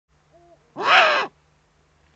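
Eurasian eagle-owl calling: a short, faint low note, then about a second in one loud, hoarse call of about half a second that rises and falls in pitch.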